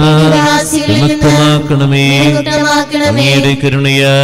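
Sung liturgical chant of the Syro-Malabar Qurbana: a male voice holding long notes that slide from one pitch to the next, with short breaths about a second in and again near three seconds.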